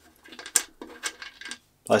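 A few faint, light metallic clicks of small steel washers being picked up and handled against a bolt and wing nut.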